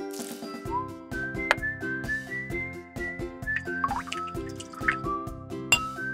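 Light background music with a whistled melody over a steady, bouncy beat.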